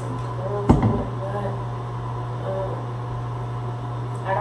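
A plastic spray bottle set down close to the microphone, giving one sharp thump about a second in, over a steady low hum.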